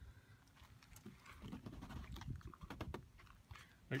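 Faint handling of a plastic shore-power cord connector at the trailer's power inlet: irregular light scuffs and scrapes, with a few sharp clicks about three seconds in.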